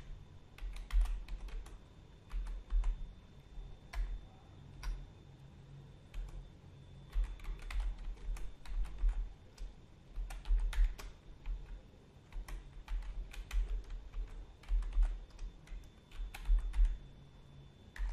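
Computer keyboard typing: keystrokes come in short runs separated by pauses of a second or two, as a password is typed and then typed again in a confirm field.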